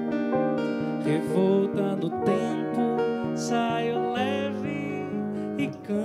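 Acoustic guitar and grand piano playing a song together, a passage between sung lines.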